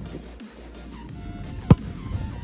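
A football struck hard with the foot in a single sharp kick, about three-quarters of the way in. Faint short tones come just before it.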